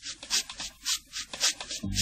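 Steam locomotive puffing: evenly spaced hissing chuffs, about three to four a second, with no music under them.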